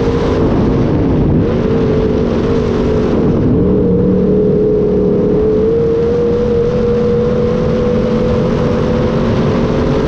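Sport mod dirt-track race car's V8 engine heard from inside the cockpit at racing speed. The engine note drops twice in the first few seconds as the driver lifts off, then holds and climbs slowly under throttle.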